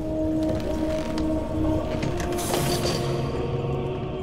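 Mechanical sound effects of a heavy armoured hammer mount moving: creaking, ratcheting clicks and a short hiss about two and a half seconds in, over sustained background music.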